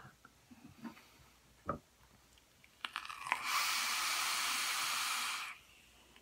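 Electronic cigarette being drawn on: a few faint clicks, then a steady hiss for about two seconds that cuts off suddenly as the draw ends.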